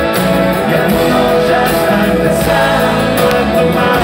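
Rock band playing live on stage, with electric guitars, bass and drums, heard from the audience.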